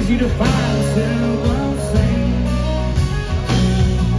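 Live country band playing through a concert sound system, with guitars, drums and keyboards.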